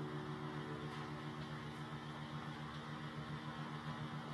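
Electric guitar rig humming while the strings are silent: a low, steady electrical buzz with faint hiss.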